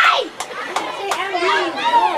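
A group of boys shouting and cheering excitedly over one another, with several sharp slaps of hands meeting in high-fives.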